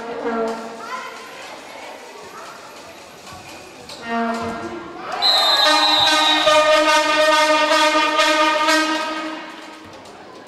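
Spectators' hand-held horns blowing in a sports hall: a short blast at the start and another about four seconds in, then from about five seconds several horns held together for about four seconds, the loudest part. A short high whistle sounds as the horns begin.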